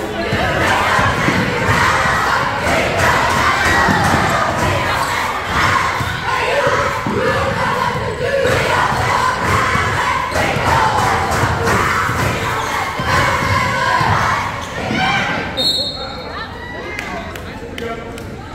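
A gym crowd and cheerleaders shouting and cheering over a basketball game, with the ball bouncing on the hardwood floor. Near the end a referee's whistle sounds briefly and the noise drops as play stops.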